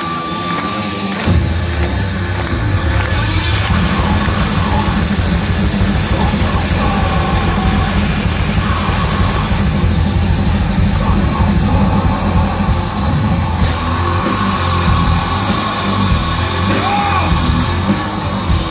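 A heavy metal band playing live at full volume: distorted electric guitars, bass and a drum kit, with shouted and sung vocals. The low end of bass and drums comes in hard about a second in.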